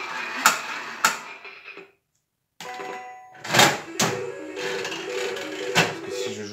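Three-reel slot machine playing its electronic beeping tune, with several sharp mechanical clunks from the reels and buttons. The sound cuts out completely for about half a second around two seconds in.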